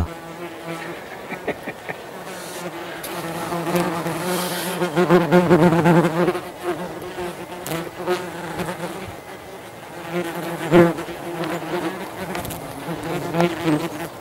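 Yellowjacket wasps buzzing as they fly around at close range, a low hum that swells and fades as individual wasps pass near, loudest about four to six seconds in and again near eleven seconds.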